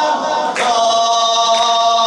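Unaccompanied Shia devotional singing (maddahi): long held vocal notes, with a brief break and a new sustained note starting about half a second in.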